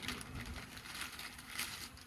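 Faint rustling and crinkling of a small plastic zip-top bag being handled, with a few light crackles scattered through it.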